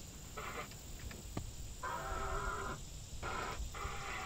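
Car radio being tuned across AM stations: short snatches of broadcast sound cut in and out abruptly, three times, with gaps between.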